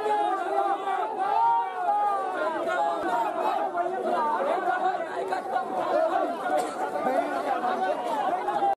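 A large crowd of men's voices, many talking and calling out at once over one another, a steady dense babble with no single voice standing out.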